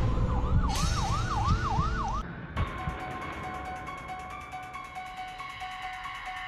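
Police siren in a fast rising-and-falling yelp, about four sweeps a second, over a vehicle's low rumble; it cuts off about two seconds in. After the cut come steady held tones of a film score.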